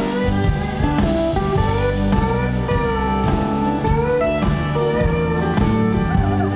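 A live country band playing an instrumental break. A lead line with sliding, bending notes plays over strummed acoustic guitars, bass and a steady drum beat.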